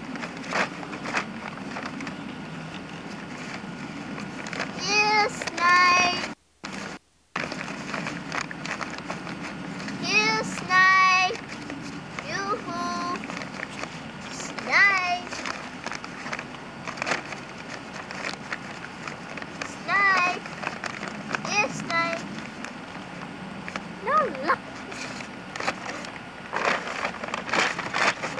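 A boy's voice calling out short, high-pitched calls about seven or eight times, spaced a few seconds apart, over a steady low hum. He is calling "snipe" to lure a snipe into a bag.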